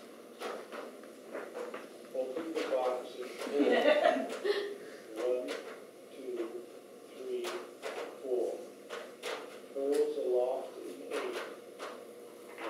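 People talking quietly, with sharp light clicks and knocks scattered between the words.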